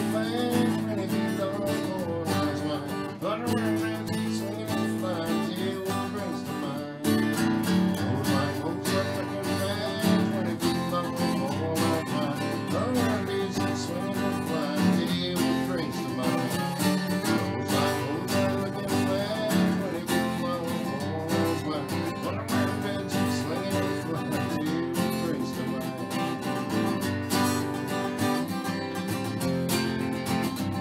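Takamine acoustic guitar strummed steadily in a country-style song accompaniment.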